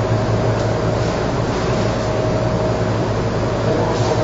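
A steady low hum with an even hiss over it and a faint constant higher tone, unchanging throughout.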